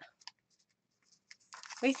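Paper and card being handled on a work surface: a few faint soft taps, then a brief papery rustle about a second and a half in.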